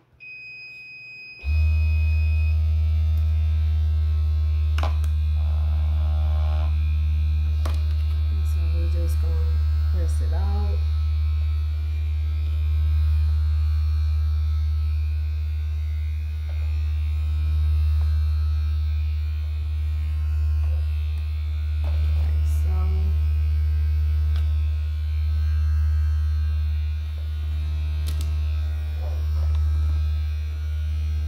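A loud, steady low electrical hum starts abruptly about a second and a half in and runs on, with a few light knocks over it. A high electronic beep tone sounds during the first two seconds or so.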